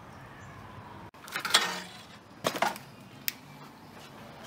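Handling clatter: a loud scraping knock about a second and a half in, a quick double knock a second later, and a short sharp click near the end.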